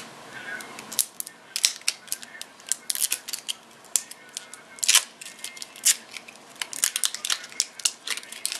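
Small plastic cosmetic packaging being handled: irregular, sharp clicks and taps, a few a second, the loudest about five seconds in.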